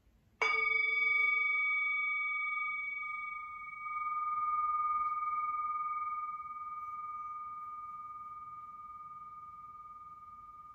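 A meditation bell struck once about half a second in, ringing on with several tones. The higher overtones fade within a few seconds, and the main tone swells once about four seconds in before slowly dying away.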